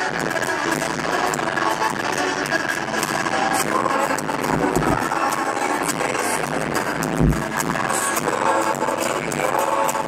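Live band playing a song in an arena, with acoustic guitar, electric guitar and drums. The music is loud and steady, with a few deep thumps about five and seven seconds in.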